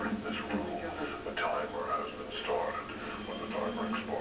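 Speech only: a man's voice speaking, the words not made out.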